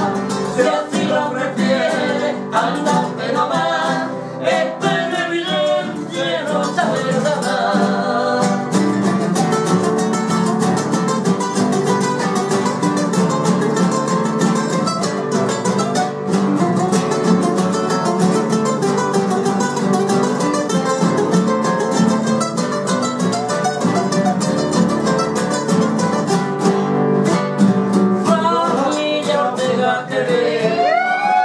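Several acoustic guitars strumming and picking a Cuyo tonada, with men's voices singing in harmony over them.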